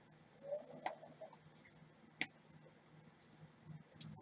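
Faint rustling and sliding of glossy Bowman Chrome baseball cards being flipped through in gloved hands, with two short clicks, the sharper one about two seconds in.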